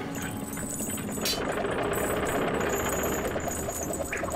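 Heavy chain rattling continuously as it runs out around a wooden ship's capstan, a cartoon sound effect, with a sharp clank just over a second in.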